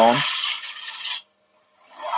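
Bowl gouge taking a light cut on side-grain wood spinning on a lathe: a steady hiss of shaving that stops just over a second in and starts again at the very end.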